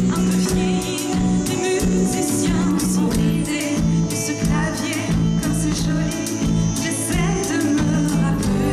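Live band playing a song: electric bass and keyboard over drums, with singing.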